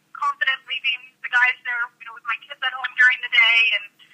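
Only speech: a woman speaking in a voicemail message, over a telephone line that cuts off the low and high end of her voice.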